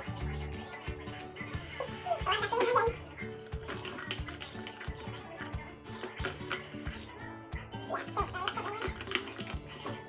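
Background pop music with a steady beat and a singing voice coming in twice.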